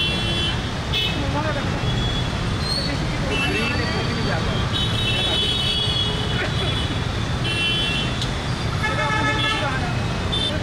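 Heavy, slow-moving road traffic: a steady rumble of idling and creeping engines, with vehicle horns honking several times over it.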